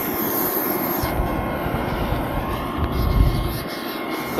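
Steady aircraft noise across an airport apron, with a faint steady whine. An uneven low rumble of wind on the microphone comes in about a second in and is strongest near the end.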